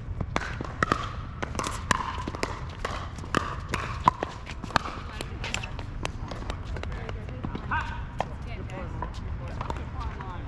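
A pickleball rally: sharp pops of paddles striking the plastic ball and the ball bouncing on the hard court, coming quickly in the first half and thinning out after, with players' voices.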